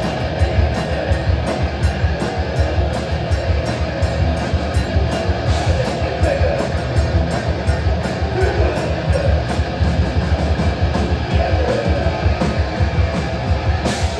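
Live heavy metal band playing loud: distorted electric guitar and bass over fast drumming, with a rapid, steady kick-drum pulse.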